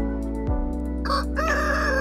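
A rooster crowing, its call starting about a second in and still going at the end, over background music.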